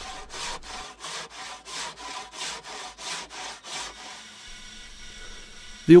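A hand saw cutting through an aircrete (Celcon) building block, in steady rasping strokes at about three a second. The sawing stops about four seconds in, leaving only a faint steady hiss.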